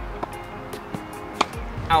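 Background music with sustained tones; about one and a half seconds in, a single sharp pop of a tennis racket striking the ball on a serve.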